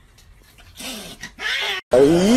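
A cat's two short, harsh vocal sounds in the second half: a low growl falling in pitch, then a hissing snarl that cuts off abruptly.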